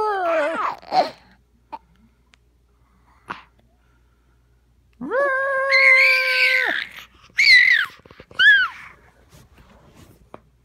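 A baby screaming in high-pitched squeals. A few falling squeals come at the start, then a pause, then one long steady scream about five seconds in, followed by two short rising-and-falling squeals.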